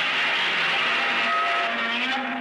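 Godzilla roar sound effect: one long, loud screeching roar with several pitched tones in it, held steady.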